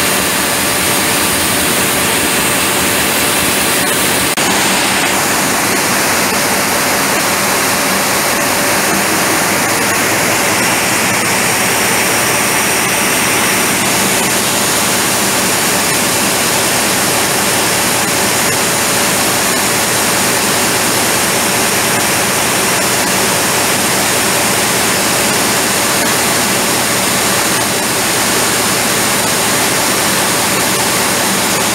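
Loud, steady din of large multi-cylinder diesel generator engines running in a power plant's engine hall. A higher hiss rises over it from about five seconds in and falls away again about halfway through.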